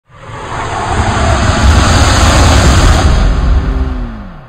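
Intro logo-reveal sound effect: a loud rushing swell with a deep rumble, building from silence over the first second, then fading near the end with a tone sliding down in pitch.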